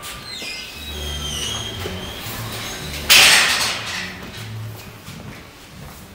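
Metal gate hinges squealing with thin, high tones, then a loud bang about three seconds in as the gate swings shut.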